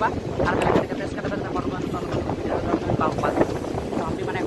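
A man talking over the steady rumble of a passenger train in motion, with wind buffeting the microphone at the open coach door.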